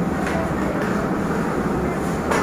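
Steady low rumble and hiss of room background noise, with no clear single source, and a couple of faint soft ticks.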